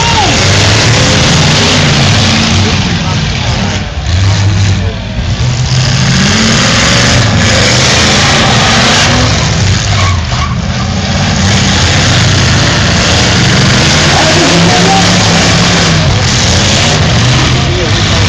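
Demolition derby cars' engines revving up and down, loud and continuous, as the cars manoeuvre and push against each other.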